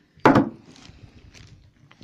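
Steel gears on a Yamaha FZR600 gearbox shaft clacking together as they are handled: one sharp double knock about a quarter second in, then lighter scattered clicks.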